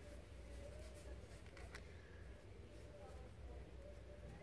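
Near silence: a low steady room hum with a faint tick or two.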